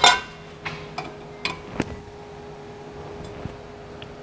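Light metallic clicks and clinks of a ratchet and an open-end wrench being fitted onto a small bolt and nylock nut, the sharpest right at the start and a few softer ones in the first two seconds, over a faint steady hum.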